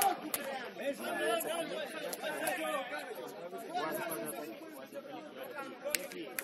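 Sideline chatter: several people talking at once, voices overlapping, too mixed for the words to come through. There is a sharp knock near the start and another near the end.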